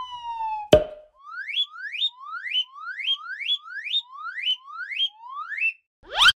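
Cartoon sound effects: a falling whistle tone ending in a sharp pop just under a second in, then a string of about nine short rising whistle chirps, roughly two a second.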